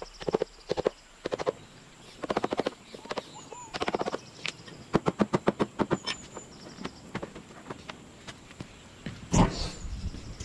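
Hand tools working a cork branch: quick runs of rapid taps and knocks in short bursts, with pauses between. A single louder knock near the end, and faint bird chirps.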